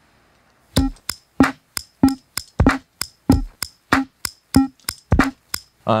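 A simple drum-machine beat played on a Teenage Engineering OP-1's drum sampler: evenly spaced hits about three a second, deep kicks mixed among woody clicks, starting about a second in.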